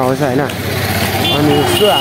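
Men's voices talking over street traffic noise, with a high steady tone setting in near the end.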